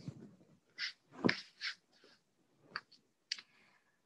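A few short, soft sounds of breathing and body movement on a yoga mat, with a light knock about a second in and a sharp click near the end.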